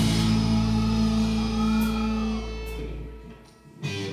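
Live rock band's bass and electric guitar holding a ringing chord after the drums stop, with a guitar line bending in pitch over it; the notes die away about three and a half seconds in, and a short new guitar sound comes in near the end.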